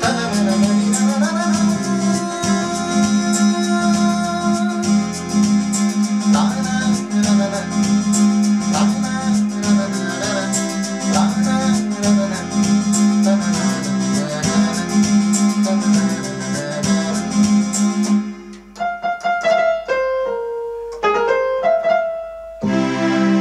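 A song arrangement led by keyboard and piano over a steady beat. About 18 s in, the beat drops out and a keyboard plays a few single notes stepping down in pitch.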